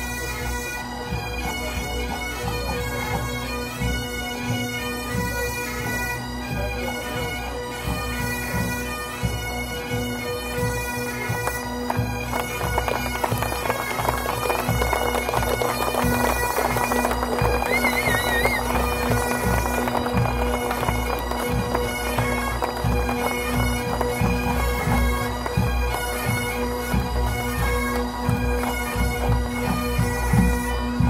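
Massed Highland pipe bands playing, the bagpipe drones held steady under the chanter melody, swelling a little louder in the middle.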